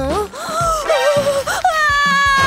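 A young woman's voice whining and wailing in gliding pitches, breaking into a long high-pitched scream near the end, over background music.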